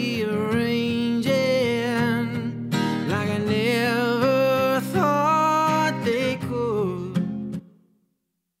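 Live recording of a singer with acoustic guitar strumming, played back through a mastering chain with a Slate VBC Rack plugin bypassed and then switched on about halfway through. The playback cuts off suddenly near the end.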